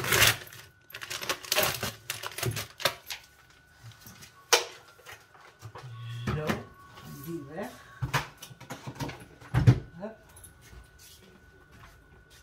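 Plastic food packaging and a plastic container being handled and opened on a kitchen counter: crinkling and clicks with several sharp knocks.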